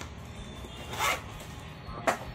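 A zipper pulled once on a small fabric makeup pouch, a short zip about a second in.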